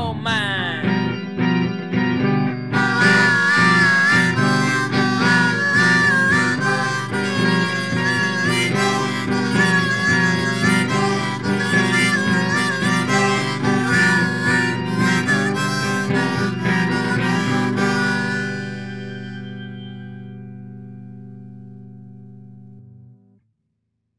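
Harmonica solo over a rock band of electric guitar, bass and keyboard, with a steady beat, playing out the end of the song. About 18 seconds in the band stops and the last chord rings and fades away, cutting off shortly before the end.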